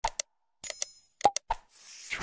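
Sound effects of a subscribe-button animation: a few sharp mouse clicks, a short bell ding a little over half a second in, two more clicks, then a whoosh near the end.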